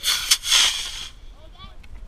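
Model rocket motor igniting and launching the Mongoose rocket: a loud hiss for about a second, with a sharp crack shortly after it starts, dying away as the rocket climbs.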